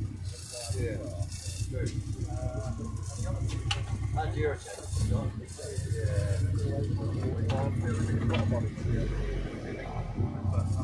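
Kit car engine running at low revs through its exhaust as the car is manoeuvred, a steady deep pulsing beat that drops away briefly about four and a half seconds in, then comes back louder.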